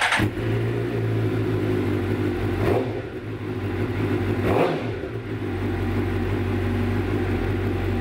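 Suzuki GSX-R inline-four sportbike engine breathing through a Two Brothers aftermarket exhaust. It fires up at the start, idles steadily with two short throttle blips about three and four and a half seconds in, and is shut off at the end.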